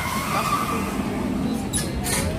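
Roller coaster train running along its track just after leaving the station: a steady low rumble.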